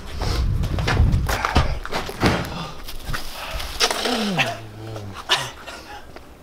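A man's drawn-out pained groan, falling in pitch about four seconds in, from the burn of very hot sauce. Before it come shuffling and knocking noises of people moving about.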